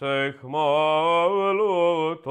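Male voice chanting a Greek Byzantine hymn: one long, slowly winding sung phrase with a brief break about half a second in.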